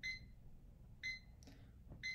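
Electronic alarm beeping, three short high beeps about a second apart: the countdown timer going off at zero, standing in for the end-of-class bell.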